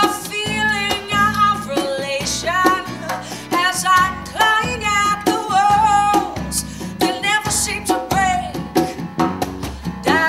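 Live acoustic band: a woman sings long, sliding notes over a strummed acoustic guitar, with bass guitar and hand-played djembe and snare percussion keeping a steady beat.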